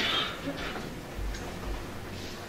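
Low hall room noise with a few faint, scattered clicks and a brief hiss at the very start.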